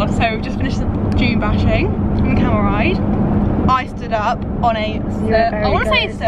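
Steady engine and road drone inside a moving car's cabin, with voices talking over it.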